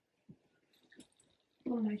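Faint rustles and soft taps of pillows and bedding being arranged on a bed, then a short voice-like pitched sound near the end.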